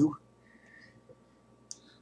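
Near silence with low room tone, broken by one faint, short click near the end.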